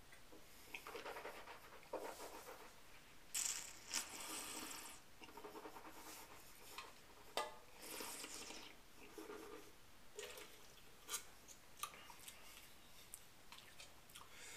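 A taster sipping red wine and drawing air through it in the mouth: several short, airy slurps and breaths, with a few small clicks of lips and tongue.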